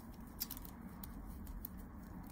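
A few faint, sharp clicks and light handling noise from nitrile-gloved fingers working a small item, the clearest click about half a second in.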